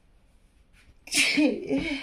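A woman's sudden, short nonverbal vocal outburst about a second in: a breathy rush with a wavering voice, lasting about a second.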